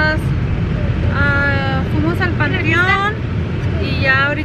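Steady low rumble of a car on the road, heard from inside the cabin, under a woman talking.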